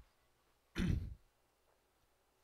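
A man clearing his throat once, briefly, a little under a second in.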